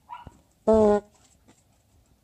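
A loud, buzzy fart noise about two-thirds of a second in: one steady, flat tone lasting about a third of a second that cuts off abruptly.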